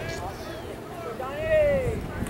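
A person's voice shouting out from the stands or dugout, with one long drawn-out call that rises and falls in pitch near the end.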